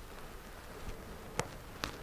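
Two short, sharp clicks about half a second apart, over quiet room tone in an empty room.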